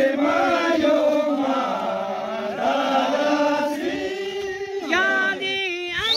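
A group of men singing a Kinnauri folk song together in unison, unaccompanied, in a steady chanting line; higher rising calls break in near the end.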